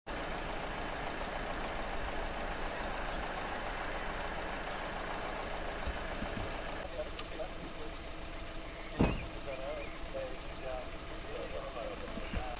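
Cars passing on a rural road: a steady rush of tyre and engine noise for about the first seven seconds, then quieter, with a single sharp knock about nine seconds in.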